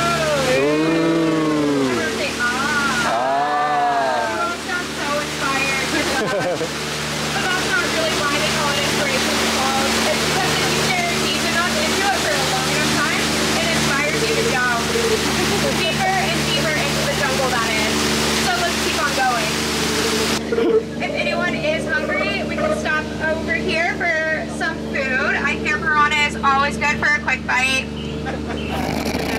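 Jungle Cruise passengers chorus a drawn-out "ooh" at the skipper's prompt, followed by a second gliding voice a couple of seconds later. Then the rush of a waterfall fills the sound for about fifteen seconds and cuts off abruptly about twenty seconds in, leaving voices. A steady low hum from the ride boat runs underneath throughout.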